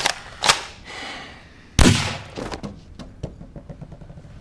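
A single loud, sudden bang, like a gunshot, about two seconds in, dying away over half a second. A patter of small ticks and hits follows.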